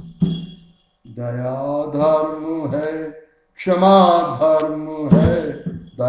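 A man singing a Hindi devotional bhajan in long, held phrases, with a short break about three seconds in.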